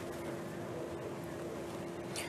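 Steady room noise: an even hum and hiss with one faint, unchanging tone, and no voice.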